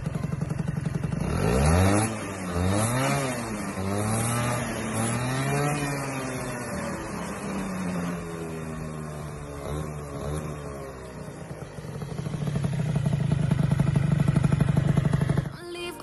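Piaggio NRG 50cc two-stroke scooter engine, freshly tuned with new variator weights and its airbox intake plug removed, running through an aftermarket expansion-chamber exhaust. It idles briefly, is revved in several rising and falling blips, settles lower, then is held at high revs for a few seconds near the end.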